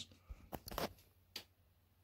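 A few faint clicks and rustles in the first second and a half, handling noise from the recording device as it is moved down to desk level.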